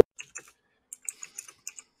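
Typing on a computer keyboard: a quiet run of irregular keystrokes.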